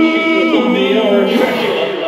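Live rock band on stage with a sung vocal holding and bending long notes, recorded from within the concert audience. The sound is thin, with little bass.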